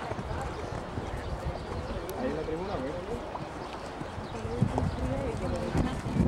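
Hooves of a show-jumping horse cantering on a sand arena, heard as dull low thuds under people's voices talking.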